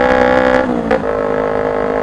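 Kawasaki Ninja 250R's parallel-twin engine running while riding, a steady buzzing drone. About a second in its pitch falls and breaks off briefly, then it settles steady again.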